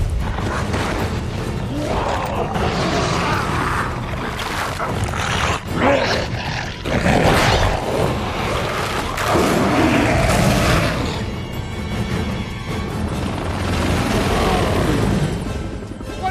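Loud action-film soundtrack: dramatic score mixed with heavy booms and crashing impacts of a fight scene, swelling in several loud surges.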